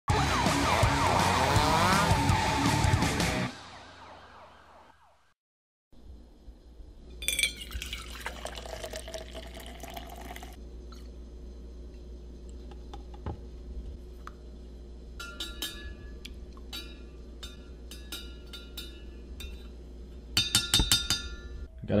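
A short opening music sting with gliding, siren-like tones fades out. Liquid is then poured into a stainless steel cup, followed by a metal spoon clinking and ringing against the cup, loudest just before the end.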